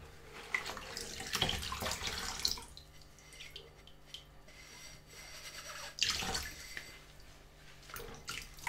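A sponge scrubbing a dimpled glass tumbler in soapy sink water, worked by rubber-gloved hands: sloshing and dripping, busiest in the first few seconds, with another splash about six seconds in.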